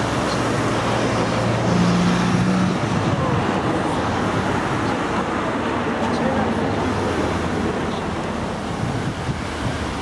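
Road traffic on a busy street: a steady wash of passing vehicles, with a low engine hum that is loudest about two seconds in.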